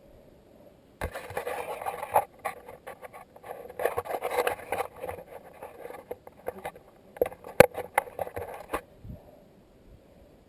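Rubbing and scraping right on the microphone, with scattered sharp clicks and knocks, starting suddenly about a second in and stopping abruptly near the end: handling noise from the camera being moved or adjusted on its mount.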